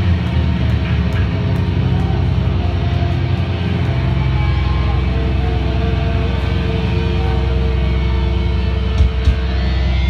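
A live rock band playing loud, with distorted electric guitars, bass guitar and drums. A deep sustained low note holds from about four seconds in, and two sharp hits come near the end.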